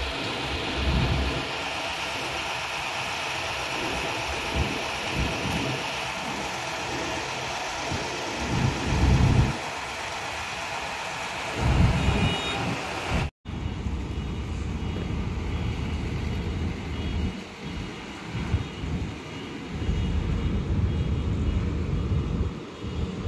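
Steady drone of heavy construction machinery with wind gusts rumbling on the microphone. The sound drops out for an instant about thirteen seconds in and then continues quieter.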